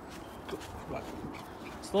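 A Pomeranian puppy making a couple of faint, short vocal sounds about half a second and a second in, over quiet yard background. A man's voice starts right at the end.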